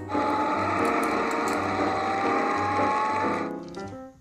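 Machinery sound effect standing in for the road maintenance lorry: a dense whirring clatter with a thin whine rising slowly in pitch, cut off about three and a half seconds in. Light background music runs under it.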